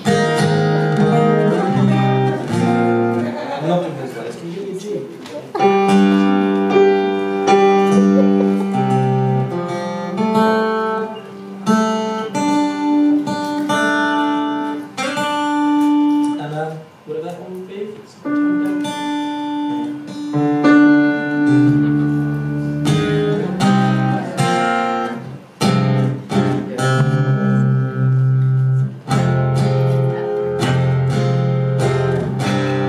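Solo acoustic guitar played live, strummed and picked, with chords and notes left ringing.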